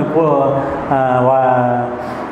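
A man's voice drawing out two long syllables, each held at a nearly steady pitch, in a chant-like delivery.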